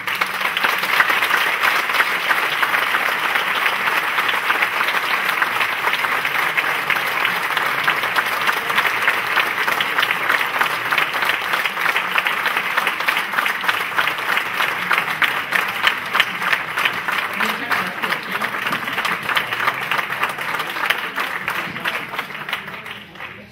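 Audience applauding: a long, sustained round of clapping that starts all at once.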